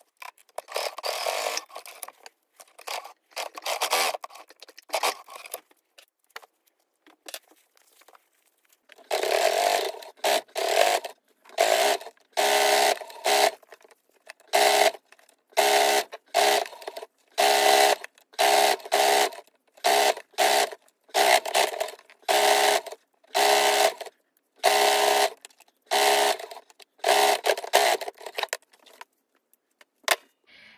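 Brother SQ9185 computerized sewing machine stitching fabric strips in short runs, its motor starting and stopping. From about a third of the way in it sews in about a dozen quick bursts, each under a second. Before that come lighter, scratchier sounds.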